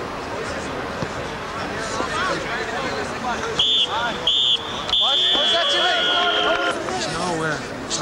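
Referee's whistle: two short blasts, then one long blast that falls slightly in pitch. Spectators chatter throughout.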